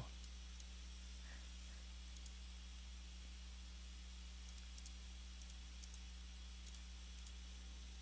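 Faint computer mouse clicks, a few scattered through the second half, over a steady low hum.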